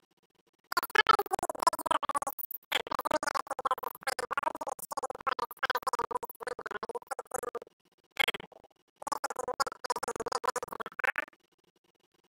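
A person's voice speaking in several phrases with short pauses, quieter than the speech around it.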